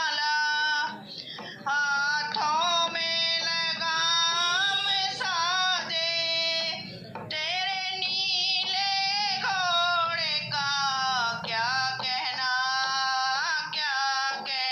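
A woman singing a Hindu devotional bhajan solo, holding long wavering notes, with short pauses between phrases about a second in and again about seven seconds in.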